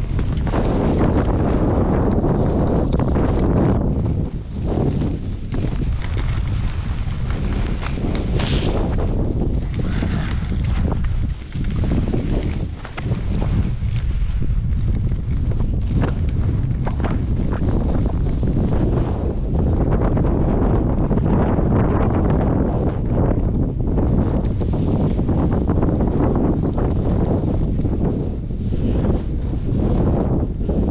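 Heavy wind buffeting the microphone of a camera moving downhill on skis: a dense, low rumbling noise that swells and drops briefly a few times.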